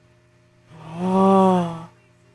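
A woman's single drawn-out wordless vocal sound, like a held 'ohh' or 'mm', lasting about a second. It starts about three-quarters of a second in, on one held pitch that rises slightly and then falls.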